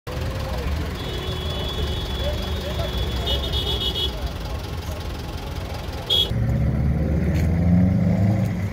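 Street ambience of idling vehicle engines with faint, indistinct voices, and a thin high electronic tone that breaks into rapid beeping about three seconds in. About six seconds in the sound cuts abruptly to a louder, closer engine hum.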